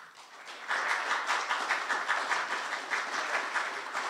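Audience applauding. The clapping swells about a second in, then slowly dies down toward the end.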